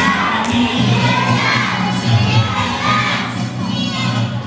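A group of children shouting and cheering together, many voices overlapping.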